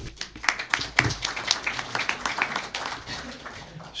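Audience applauding: many irregular hand claps that thin out slightly near the end.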